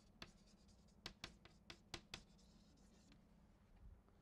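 Chalk writing on a blackboard: a handful of faint, short taps and scrapes of the chalk as a word is written, about six strokes in the first two seconds or so.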